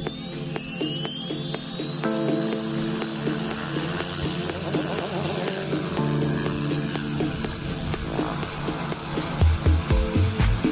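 Align T-Rex 470 electric RC helicopter spooling up: a high whine from the motor and rotor rises in pitch, levels off about three seconds in and then holds steady as the model flies. Background music plays underneath.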